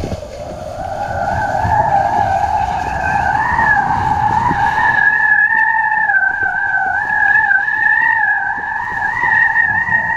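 A steady whistle that wavers slightly in pitch, fading in over the first second, from wind singing on the kiteboarding kite lines and the line-mounted camera as the rider goes fast, over low wind rumble on the microphone.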